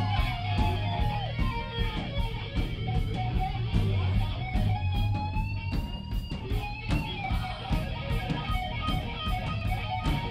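Live rock band playing: electric guitar with bent, gliding notes over a bass line and drums keeping a steady cymbal beat.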